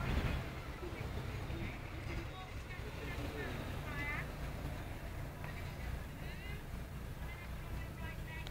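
Faint, indistinct voices over a steady low outdoor rumble.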